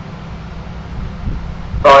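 Steady low rumble of background noise, with a man saying a short word near the end.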